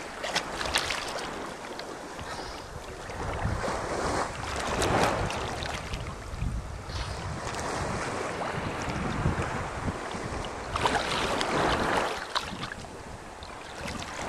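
Shallow seawater splashing and sloshing at the surface close to the microphone, with wind buffeting the microphone. It swells louder twice, about five seconds in and again near the end, with scattered small splashes throughout.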